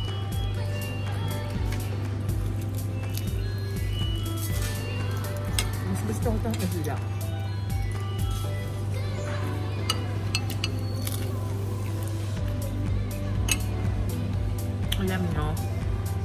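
Background music with a steady low hum, overlaid by repeated short clinks of cutlery and dishes on a plate.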